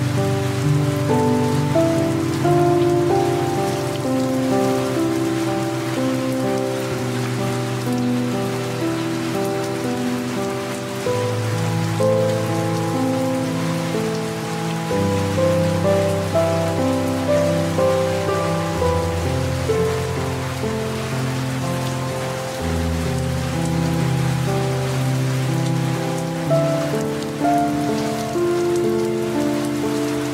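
Soft piano music playing slow, sustained notes over a low bass note that changes every few seconds, mixed with the steady hiss of light rain.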